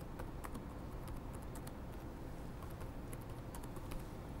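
Computer keyboard being typed on: irregular, fairly faint key clicks over a steady low hum.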